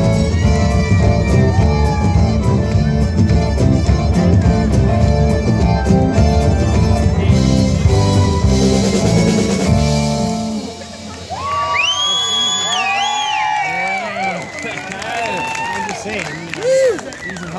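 Live rock band of drums, bass, electric guitar and keyboards playing loudly. The song ends abruptly about ten seconds in. The audience then cheers and whistles.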